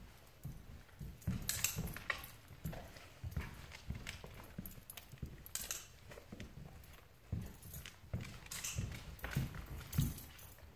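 Footsteps of a person and a large dog walking on a hardwood floor, the dog's claws clicking: a run of irregular knocks and taps, a few of them sharper.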